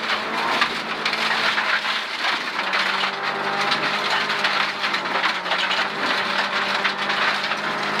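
Rally car driving on a gravel road, heard from inside the cabin: a steady engine note at constant revs under a continuous crackle of gravel and small stones striking the underbody and wheel arches.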